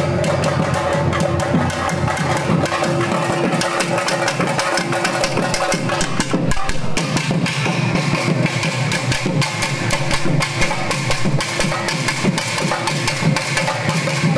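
Thalattu melam, a folk temple drum ensemble, playing a loud, continuous fast rhythm of dense, sharp drum strokes to accompany the Pechiamman fire-pot dance.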